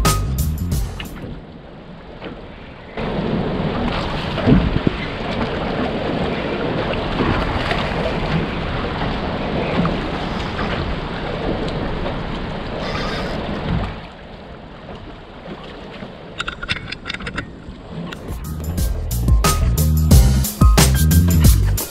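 Steady rush of wind and sea noise on an open boat at sea, between stretches of background music with a beat that fades out at the start and comes back near the end.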